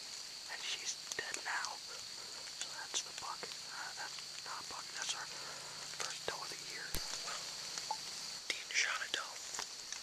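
A man whispering in short stretches over a steady high-pitched hiss, with one sharp click about seven seconds in.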